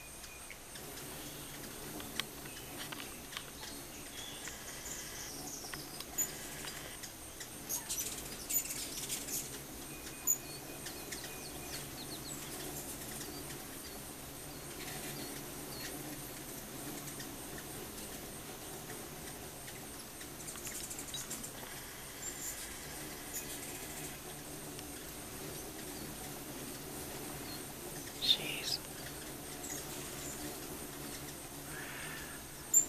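Hummingbirds swarming nectar feeders: scattered high, squeaky chips and chatter, thickest about a third of the way in and loudest just before the end, over a low steady whirr of many wings.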